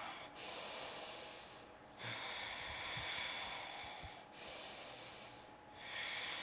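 A woman breathing slowly and audibly through the nose while holding a yoga backbend: about four soft, drawn-out breaths in and out, each lasting one to two seconds.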